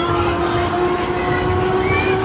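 Loud fairground ride music with a long held, horn-like note over a steady low beat.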